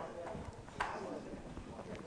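Quiet room background in a pause between speech, with one faint short click a little under a second in.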